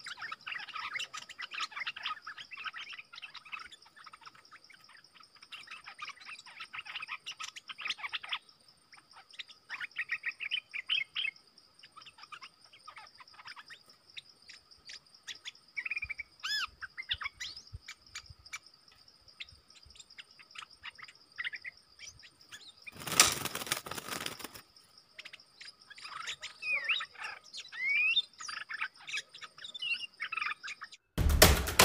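Bulbuls chirping and warbling in short phrases, the caged decoy and a wild bird perched just above it calling back and forth, over a steady high insect drone. About two-thirds of the way in, a loud rush of noise lasts a second or so.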